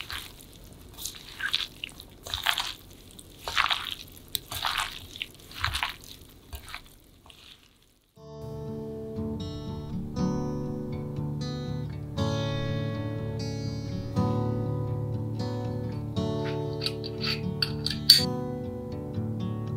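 Wet squelching strokes, about one a second, of a gloved hand tossing sticky chili-paste-dressed whelk salad in a glass bowl. They stop about eight seconds in, and after a moment of silence acoustic guitar music begins and carries on.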